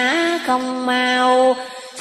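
A single voice chanting Vietnamese Buddhist verse in a drawn-out, sung recitation style, holding a long vowel that steps up in pitch and back down, then fades out near the end.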